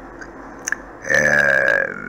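A man's drawn-out hesitation vowel, a held "éé" at a steady pitch, starting about halfway through after a short pause broken by a faint click.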